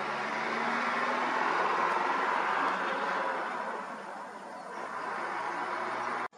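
Vehicle engine noise as a lorry pulls away from a wild elephant, a steady noisy hum that eases off about four seconds in.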